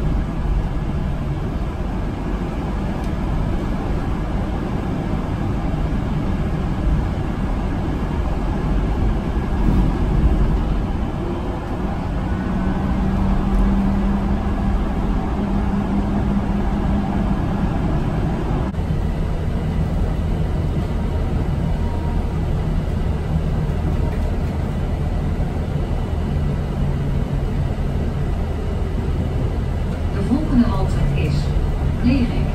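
Cabin noise inside a VDL Citea electric bus on the move: a steady low rumble of road and drive noise with a faint high electric-motor whine. The noise changes abruptly about two-thirds of the way through.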